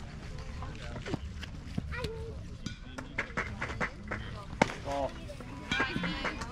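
Distant voices of players and spectators over a low steady rumble, with scattered light clicks and one sharp knock a little after the middle.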